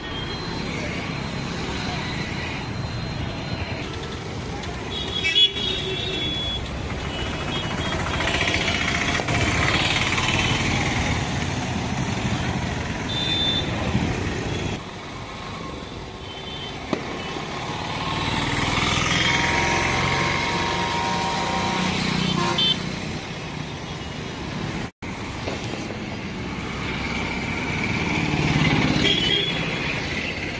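Town-street traffic: motorcycles and cars passing, with a few short vehicle horn toots.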